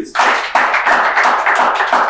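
A studio audience clapping, many hands together, with the claps coming at a fairly even quick rate.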